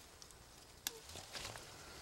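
Faint rustling and handling at a hardy kiwi vine as ripe fruit is picked by hand, with one sharp click a little under a second in and a few soft knocks after it.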